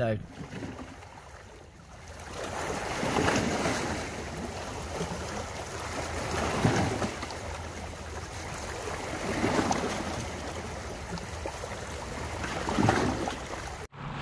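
Small sea waves washing over shoreline rocks, swelling and falling back about every three seconds.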